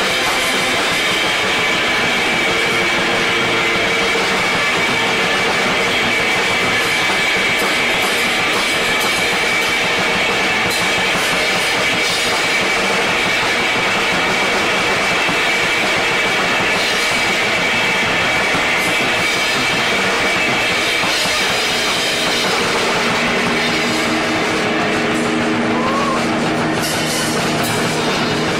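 Live rock music from a two-piece band: drum kit playing under a dense, noisy wall of guitar-like sound, with a high tone held through most of it. Lower held notes come in near the end.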